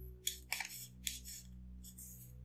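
Chisel-tip marker scratching across paper in short hatching strokes, about four quick scratchy strokes in the first second and a half, then a short pause. Faint steady background music runs underneath.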